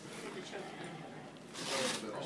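A strap on a spine board rasping as it is pulled: one short rasp about a second and a half in.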